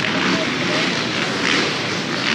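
Motocross motorcycle engines running at high revs on the track, a steady wash of engine noise that swells and fades roughly once a second, with spectators talking.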